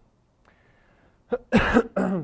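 A man coughing: a short cough, then a louder one near the end, from a man recovering from a slight cold.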